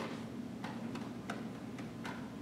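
Faint, fairly regular ticking, about three ticks every two seconds, over a steady low hum of room tone.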